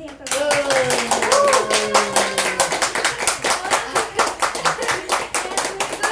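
A small audience clapping, with voices calling out and cheering over the applause as a song ends.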